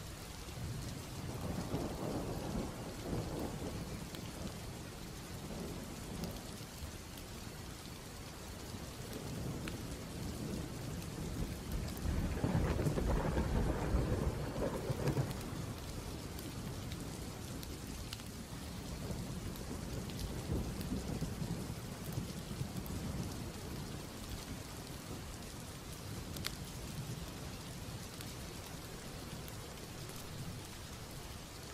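Steady rain with rolling thunder: a rumble a couple of seconds in, a louder, longer one about twelve seconds in, and a fainter one later.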